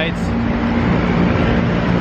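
Busy road traffic of cars and scooters running past, a steady engine hum under the noise of the passing vehicles.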